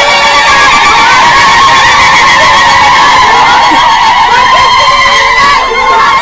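Many women ululating together: a loud, sustained high trilling of overlapping voices over the noise of a crowd.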